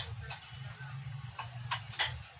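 A few short, sharp clicks and clinks of ceramic tableware being handled, spaced irregularly over a low steady hum.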